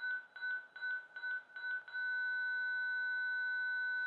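ZOLL X Series Advanced defibrillator's charge tone: a high-pitched electronic beep repeating about two to three times a second while it charges to 200 joules. About halfway through, the beeps turn into one steady tone, the signal that it is fully charged and ready to shock.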